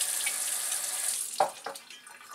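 Tap water pouring into a glass Pyrex measuring cup of dissolved white sugar, the last of four parts water to one part sugar for hummingbird nectar. The flow stops a little over a second in, followed by two light knocks.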